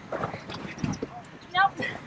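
Outdoor crowd chatter with a few knocking thuds like footfalls, and a short high-pitched voice call near the end.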